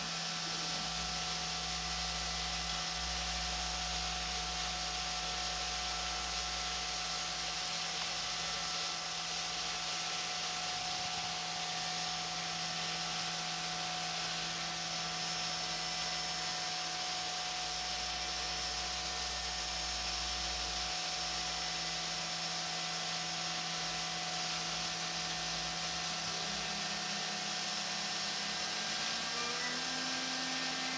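Brother Speedio S700X1 CNC machining center running a dry cycle program, with no part being cut: a steady machine hum with several held tones, under the hiss of flood coolant spraying inside the enclosure. Near the end a tone rises in pitch.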